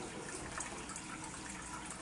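Steady trickle of running water in the aquarium, an even wash with faint small splashes.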